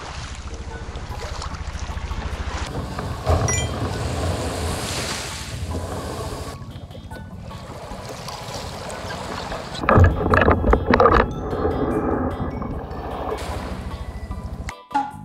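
Wind buffeting the microphone over lapping sea water, with bumps and knocks against a kayak as a person climbs aboard, loudest in a cluster about ten seconds in.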